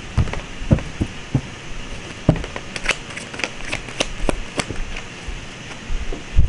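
A tarot deck being shuffled and handled by hand: a run of irregular sharp clicks and flicks of the cards, thickest about three to four and a half seconds in.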